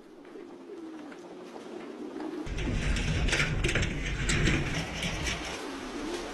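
Caged domestic pigeons cooing, getting louder about halfway through, with a few sharp clicks among them.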